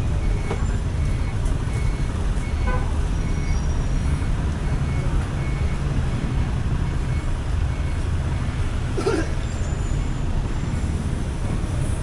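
Steady rumble of street traffic from motorcycles, motorcycle tricycles and cars passing close by, with a short horn toot about three seconds in. A faint high beep repeats on and off through the first half.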